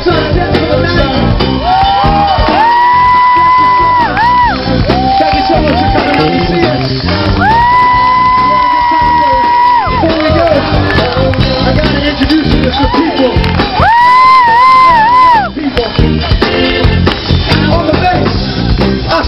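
Live band music with drum kit, electric guitar and keyboard behind a male lead singer. He holds three long high notes, the last one wavering in pitch near the end.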